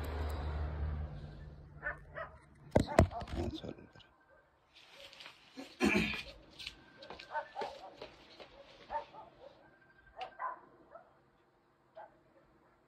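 A dog barking off and on in short, irregular barks, the loudest about three seconds in and about six seconds in. A low hum fades out about a second in.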